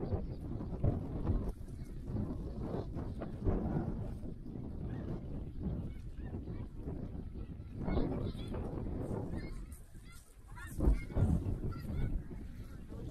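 Snow geese calling: repeated high, yelping honks, clearest around eight seconds in and again near the end, over wind buffeting the microphone.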